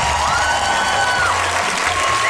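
Studio audience applauding and cheering over the show's background music, which holds long high notes above a repeating low bass.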